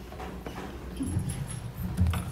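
Soft, irregular low thumps and rustling, heaviest in the second half.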